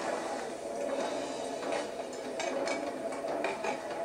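Restaurant kitchen clatter: plates and metal utensils clinking and knocking in quick, irregular clicks over a busy background.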